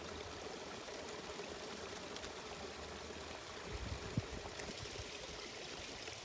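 Small brook flowing: a steady, even rush and babble of running water.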